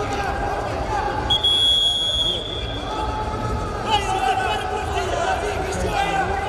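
A referee's whistle blown once, a single steady blast of about a second, stopping the action on the mat. Arena crowd chatter and shouting run underneath.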